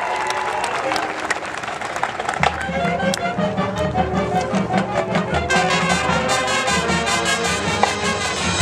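Marching band playing its field show: massed brass with percussion, the low instruments coming in fuller about two and a half seconds in.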